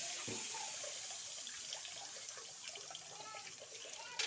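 Food sizzling in a wok over a wood fire, a steady quiet hiss, with one soft thump about a quarter of a second in.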